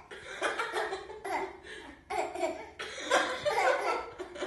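A baby boy laughing in four high-pitched bursts, about one a second, the last one the longest.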